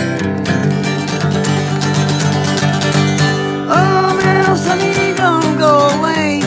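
Country-style music on a strummed acoustic guitar, steady and loud, with a higher gliding melody line coming in about halfway through.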